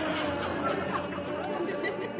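A man's long held sung call, sung through a cupped hand, ends just after the start. A studio audience then chatters and murmurs over faint orchestra.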